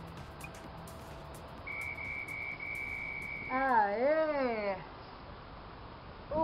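A high, steady electronic beep lasting about a second and a half. It is followed by a woman's drawn-out, wavering cheer of relief ("aêêê") as she finishes a plank hold.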